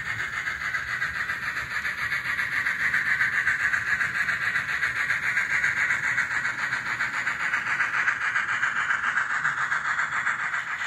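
N scale model freight train running past, led by an Atlas Southern Pacific Train Master diesel: a steady, fast, fine rattle of small metal wheels on the rails and the locomotive's motor and gears. It grows a little louder a few seconds in as the cars come closest.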